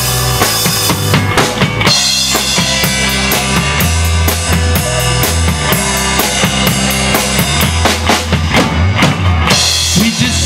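Live rock band playing an instrumental passage with no singing. The drum kit is to the fore, with bass drum, snare and a steady run of cymbal ticks, over a low bass line and electric guitars. The drums drop back briefly near the end.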